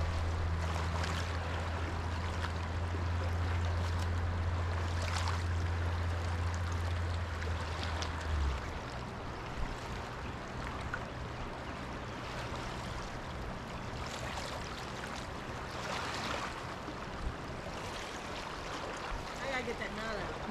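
Rush of a high, fast-flowing river, a steady even noise of moving water. Under it a low steady hum runs for the first eight seconds or so, then stops.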